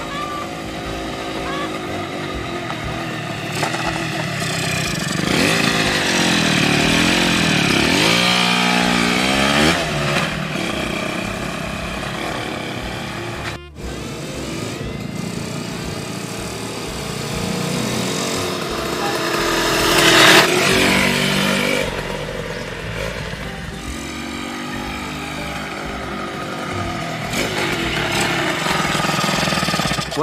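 A small dirt bike's engine running and revving as it rides by, its pitch rising and falling several times, with music playing underneath.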